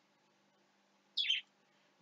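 A single brief, high-pitched chirp that falls in pitch, a little over a second in; the rest is near silence with a faint steady hum.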